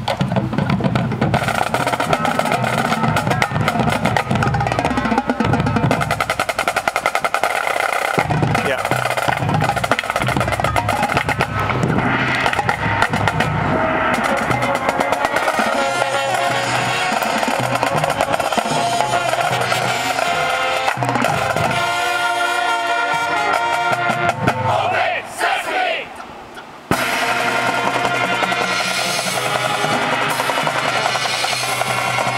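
Marching show band playing its field show: wind instruments over drums and pit percussion, with snare drum rolls. Near the end the music thins and drops away briefly, then the full band comes back in loudly.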